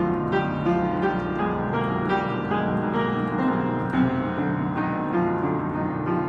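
Upright piano played with both hands, a steady flow of notes several a second, each ringing on into the next.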